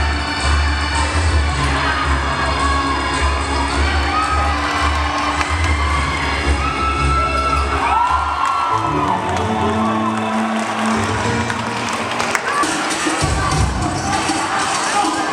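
Background music with a heavy beat, mixed with a crowd of young spectators cheering and shouting. About nine seconds in, the deep bass drops away and the music changes.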